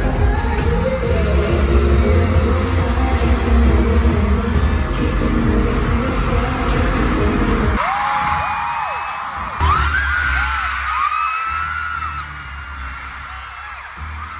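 Loud live K-pop music with heavy bass and singing through an arena sound system, cutting off about eight seconds in. After that, a crowd of fans screams and cheers in high, wavering voices, with a sudden louder swell about a second and a half later.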